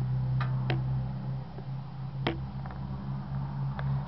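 A few light, separate clicks over a steady low hum.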